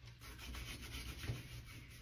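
Fingers rubbing sunscreen into facial skin: a faint run of quick, soft rubbing strokes.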